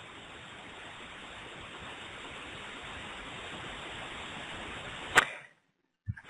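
Steady hiss of background noise, edging slightly louder, then one sharp click about five seconds in, fitting a mouse click; the hiss cuts off abruptly just after.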